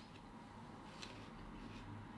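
Quiet room with a low steady hum and two faint, sharp clicks, one at the start and one about a second in, from a computer mouse under the hand.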